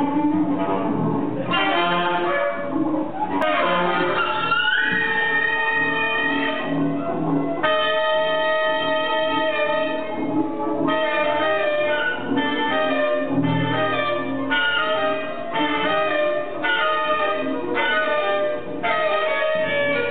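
Two saxophones, a soprano and a curved saxophone, played at once by one player, sounding held notes together, with a double bass underneath. Long sustained notes give way about halfway through to short phrases that break off roughly once a second.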